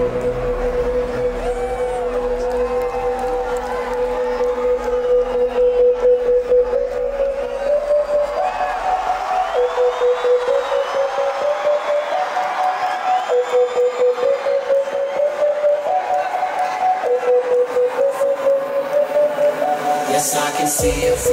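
Electronic dance music breakdown played over a club sound system: a sustained synth lead holds one note and steps up through a few higher notes and back down. The deep bass fades out about eight seconds in, leaving the lead over a pulsing rhythm.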